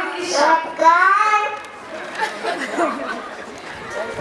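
Speech: a woman talking into a microphone for about a second and a half, then quieter chatter.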